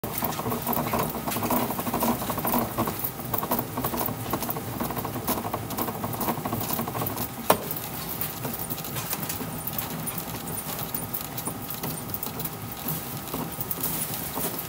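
A composite youth baseball bat, an Easton Speed Comp, being turned under pressure between the rollers of a hand-worked bat-rolling machine to break it in: a continuous rolling noise full of small irregular clicks and crackles, a little louder in the first few seconds, with one sharper click about halfway through.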